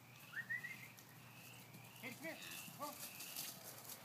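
Shih Tzu barking faintly in short yaps: a high one just after the start, then a couple about two seconds in and another near three seconds.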